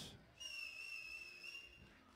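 A single high, steady whistle tone held for about a second and a half, dipping slightly in pitch before it stops.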